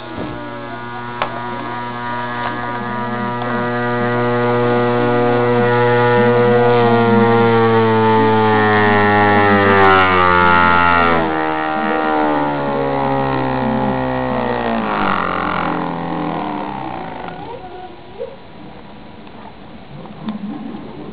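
Bedini motor's audio-transformer pulse coil buzzing, a steady low hum with many overtones. From about halfway through, it drops in pitch and dies away over several seconds as the rotor slows.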